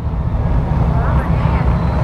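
Honda Gold Wing's flat-six engine running as the motorcycle pulls slowly away, a steady low rumble heard from the rider's seat.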